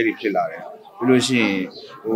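A man speaking in two short phrases with a pause of about half a second between them.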